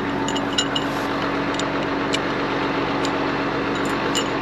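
Tractor engine idling steadily, with a few light clicks.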